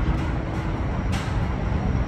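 Low, steady rumble of city traffic heard from high above the streets, with a faint tick about a second in.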